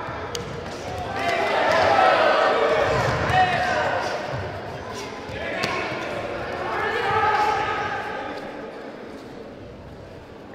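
Several voices shouting at once in two long swells, over scattered dull thuds of bare-fisted punches and kicks landing on the body in a full-contact karate bout.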